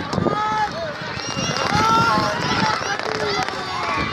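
Many spectators shouting and calling out at once as racehorses gallop past on a sand track, with the drumming of hooves beneath the voices.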